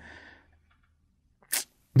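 A man's short, sharp breath in at a close microphone about one and a half seconds in, after a near-silent pause in his talk.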